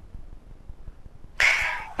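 Faint background noise with a few soft low thuds, then about one and a half seconds in a person's voice starts suddenly with a breathy, high-pitched sound.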